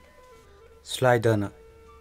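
Speech only: a man's voice says a few words about a second in, over faint background music of held tones.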